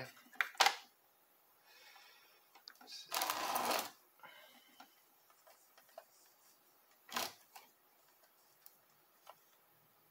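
Handling noises at a soldering bench: a few sharp clicks and knocks, a short rushing hiss lasting about a second about three seconds in, and another click later on.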